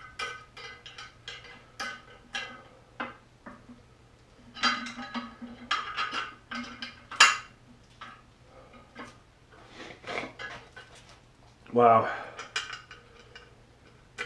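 Small metal bolts and engine parts clinking and tapping together as they are handled: a string of short, sharp metallic clicks with a slight ring, busiest in the middle and loudest about seven seconds in.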